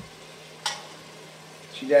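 A spoon stirring food in a stainless steel cooking pot on the stove, with one short sharp scrape of the spoon against the pot about two-thirds of a second in, over a faint steady hiss of the pot cooking.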